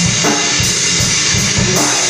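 Rock music driven by a drum kit: fast, even bass and snare hits about five a second under a steady wash of cymbals.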